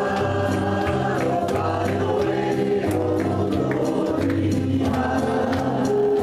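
Live gospel song: several men's and women's voices singing together in harmony, accompanied by acoustic and electric guitars.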